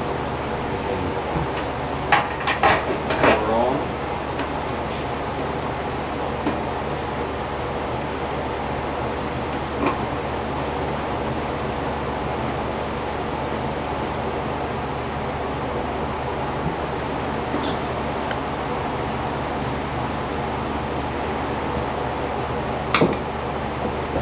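Knocks and clatter of a metal fluorescent fixture and tubes being handled, a cluster of them about two to four seconds in and single clicks later, over a steady low electrical hum.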